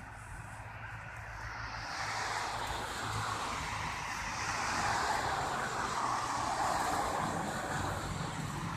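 A passing vehicle's rushing noise that swells over a few seconds and stays up, its pitch sliding slowly down, over a steady low rumble.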